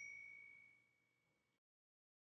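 Tail of a bell-ding sound effect marking a click on a notification bell. A single ringing tone fades out within the first second.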